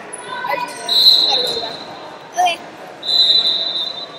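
Wrestling shoes squeaking on the mat as the wrestlers move and hand-fight: two long, high, steady squeaks, about a second in and again near the end, with a short chirp between them. Voices call out in the background, echoing in a large gym.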